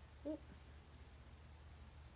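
Near silence: a steady low room hum, with one short hum-like murmur of a woman's voice about a quarter of a second in.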